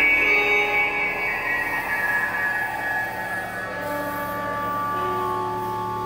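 Drone music in D: many sustained tones layered from a guitar run through effects pedals. The high tones slowly slide down in pitch while the whole sound gradually gets a little quieter.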